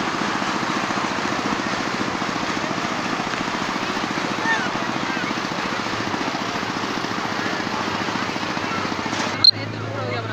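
A motor running steadily with a fast, even pulse, mixed with a noisy background and faint voices of people around. A sharp click comes near the end.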